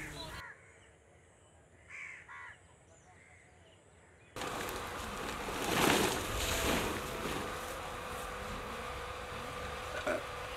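Two short bird calls about two seconds in, over a quiet outdoor background. From about four seconds on comes a louder, steady outdoor noise that swells near the middle.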